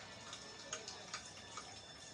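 Faint, quiet passage of the fireworks-show soundtrack: held tones under soft ticks, about two a second.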